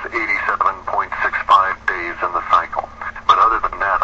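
Speech only: talk on a radio call-in show running without pause, with a faint steady hum underneath.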